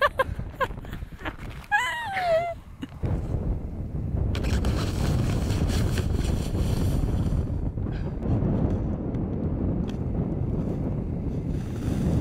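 Wind buffeting the microphone, a steady rumbling noise that sets in about three seconds in. Before it come a few crunching steps in snow and a brief vocal sound about two seconds in.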